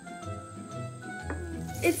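Background music with melodic notes over a bass line. Butter sizzles as it melts in a stainless frying pan under the music, and a voice begins just before the end.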